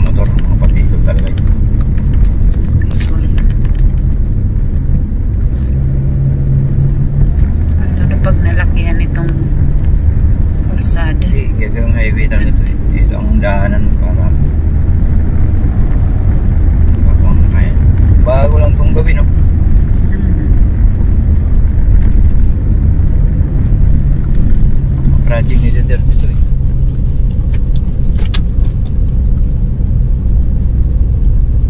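Steady low rumble of a car driving on a concrete road, heard from inside the cabin.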